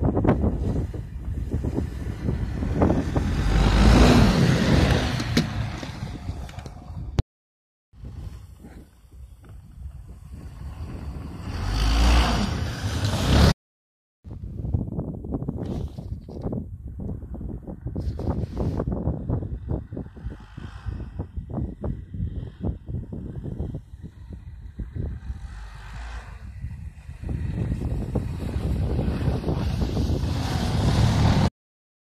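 Snowmobile engines running over snow, with heavy wind buffeting on the microphone. The engine sound swells twice and each swell is cut off by a brief dropout; later it turns choppy and builds again as a sled comes close near the end.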